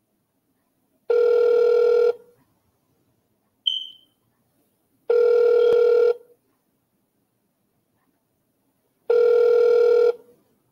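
Telephone ringing tone heard over a speakerphone: three one-second rings about four seconds apart, with near silence between, and a brief high chirp between the first and second ring.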